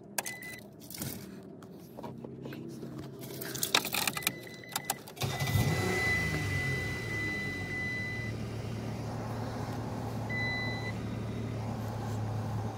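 Keys jangling and clicking in the ignition, then the 2008 Dodge Dakota's 3.7-litre V6 starts just after five seconds in and settles into a steady idle. A high electronic tone sounds on and off over it.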